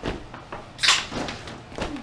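Cloth swishing and flapping as a pair of camouflage pants is shaken out and dropped onto a large box, with a short, sharp swish and light thud about a second in.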